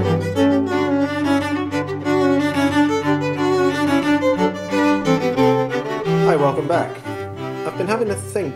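Intro music played on bowed strings over a held low bass note. The low note drops out about five and a half seconds in, and the music thins toward the end.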